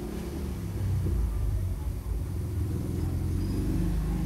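A steady low rumble, growing stronger about a second in.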